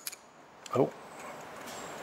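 Quiet workbench room tone with a short click near the start, as a screwdriver works the small idle jet screw of a Walbro carburettor.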